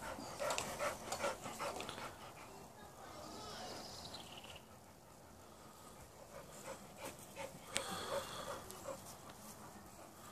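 Pit bull panting in quick, irregular breaths close by, in the first couple of seconds and again near the end.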